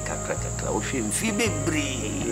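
A man speaking, over a constant high-pitched tone and a low hum that shifts in pitch every second or so.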